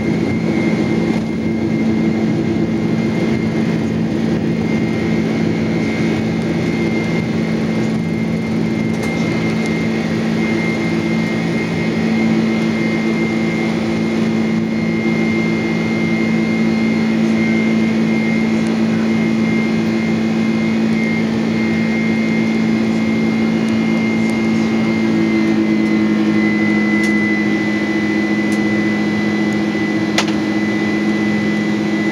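Jet airliner's engines at takeoff thrust, heard inside the cabin as the plane lifts off and climbs. A loud, steady drone carries a thin, steady high whine throughout.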